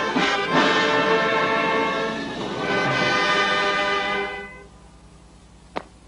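Brass band music with full, sustained brass chords, fading out about four and a half seconds in. A single sharp tick follows near the end.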